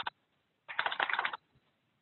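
Typing on a computer keyboard: a few quick keystrokes right at the start, then a short run of rapid keystrokes lasting about half a second.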